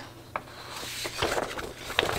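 Sheets of printable heat transfer vinyl with paper backing rustling and sliding against each other as they are shuffled by hand, with a light tap about a third of a second in.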